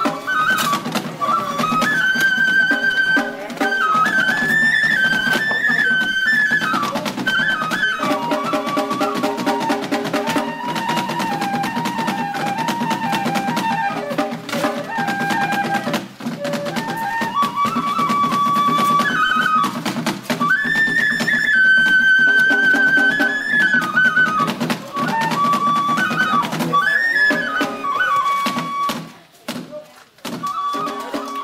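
Live Ise Daikagura festival music: a bamboo flute playing a wavering melody over a fast, steady beat of drum and small hand cymbals. The music drops away briefly near the end.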